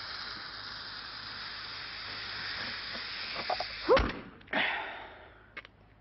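Steady airy hiss as a balloon is blown up by mouth. About four seconds in it breaks off with a loud, short squeak rising in pitch, followed by a brief rush of noise that fades away.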